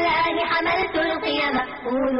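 A voice singing over instrumental music, held notes that slide in pitch.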